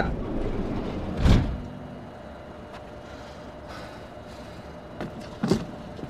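A dull thud about a second in, then the low steady hum of a train standing at a platform, with a few footsteps near the end as passengers step down off the train.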